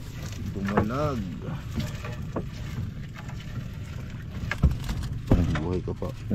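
Gill net being hauled by hand into a wooden outrigger boat, over a steady low rumble of water and wind. There are a couple of sharp knocks against the boat near the end. A short wordless voice sound comes about a second in and again just before the end.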